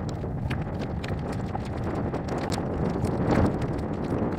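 Wind buffeting the microphone outdoors: a steady low rumble with scattered sharp ticks, swelling into a louder gust about three seconds in.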